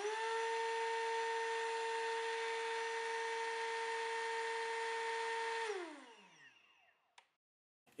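Electric RC motor spinning up as the throttle comes on at the end of the hand-launch countdown, running with a steady whine for about five and a half seconds, then winding down in pitch when the sequence is switched off. A single click follows shortly after.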